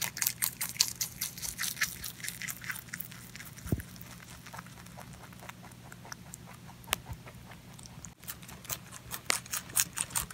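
A rabbit chewing leafy greens: rapid crisp crunches, about five a second. The chewing dies down after about three seconds and starts again near the end.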